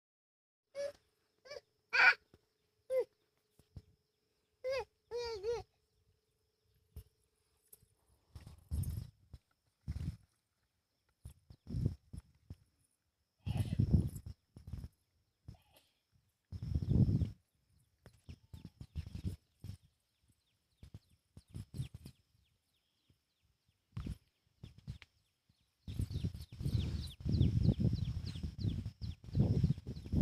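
A toddler gives a few short, high vocal calls in the first few seconds. These are followed by irregular bursts of low, muffled rumbling noise close to the microphone.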